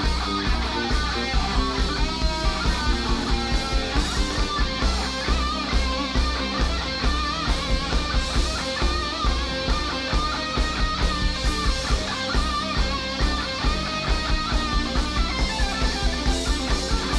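Live rock band playing, with electric guitar out front over bass guitar and a drum kit keeping a steady beat.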